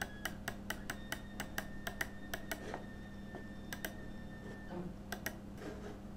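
Quick run of faint computer mouse clicks, about four a second, as short strokes are drawn. The clicks stop after about two and a half seconds and come back in a few sparse clicks near the end, over a faint steady hum.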